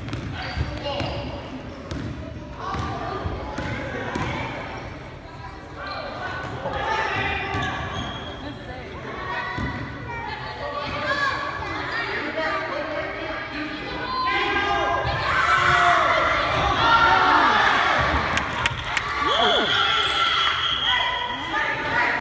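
A basketball being dribbled on a hardwood gym floor during a game, its bounces mixed with spectators' voices shouting and cheering. The voices grow louder after about fifteen seconds.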